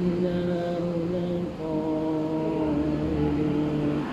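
A man's voice chanting a religious recitation from a prayer booklet in long, held notes. The melodic line pauses briefly about a second and a half in, then carries on in a second long phrase.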